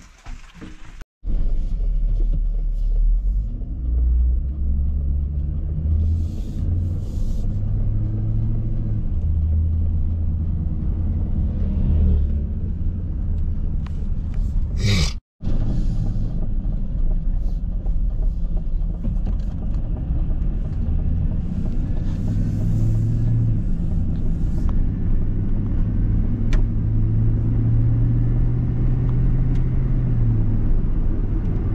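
Vehicle engine and road rumble heard from inside the cab while driving, a steady low drone whose engine note steps up and down. It is preceded by about a second of footsteps on a wooden deck.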